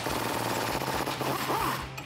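Impact wrench hammering on the upper control arm's frame-bolt nut with an 18 mm socket on a swivel, spinning it loose. The rapid hammering stops just before the end.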